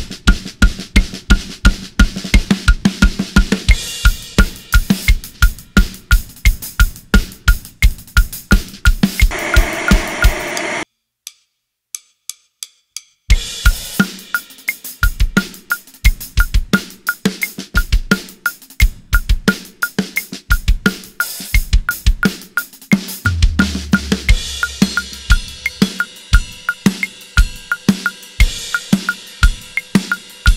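A Mapex Saturn IV drum kit with Bosphorus cymbals played in a steady, even groove of bass drum, snare and cymbals, demonstrating a metric modulation where a triplet subdivision becomes the pulse of a new tempo. The playing stops for about two seconds of near silence just past the middle, then a new groove starts.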